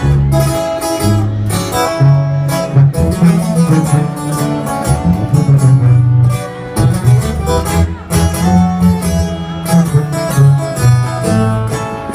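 Live regional Mexican band playing an instrumental passage between sung lines: strummed and picked guitars over a tuba bass line and drums, heard loud from the crowd.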